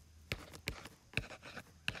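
Stylus tapping and scratching on a tablet touchscreen as numbers are handwritten, with about four sharp ticks.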